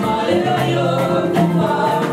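Gospel worship song: a group of voices singing together over instrumental backing with bass notes stepping beneath them.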